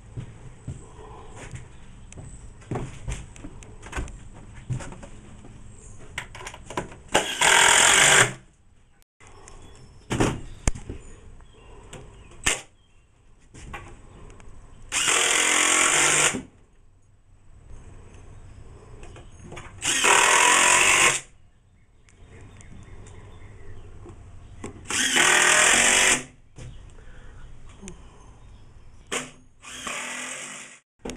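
Cordless screw gun driving screws into the wooden side of a top bar hive body, in four bursts of about a second each, roughly five seconds apart. Light knocks from handling the wood come between the bursts.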